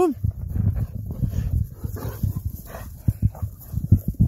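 German Shepherd close to the microphone, breathing and sniffing in quick, irregular puffs.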